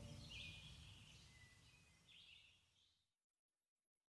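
Near silence as a song ends: the last of its reverb fades over the first second, with faint bird chirps twice, then complete silence for the final second.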